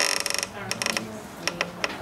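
A fast rattling run of clicks for about half a second, a second short run, then a few separate clicks.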